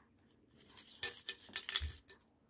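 Opened aluminium drink can being shaken and tipped to get sugar-free Polo mints out of it: a run of irregular clinks and rattles starting about half a second in, with a dull knock near the end.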